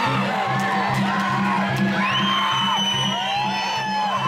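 Large wooden barrel drum beaten in a steady rhythm, about three beats a second, with high whoops and calls over it, one long high call held about halfway through.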